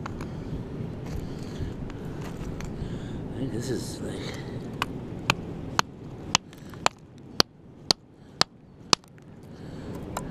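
Rock hammer striking a concretion, splitting it open to look for a fossil crab inside: a run of about nine sharp cracks, roughly two a second, through the second half.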